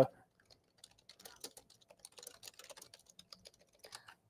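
Faint, irregular typing on a computer keyboard: quick light key taps in uneven runs.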